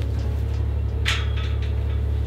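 A steady low hum, with one brief soft rustle about a second in.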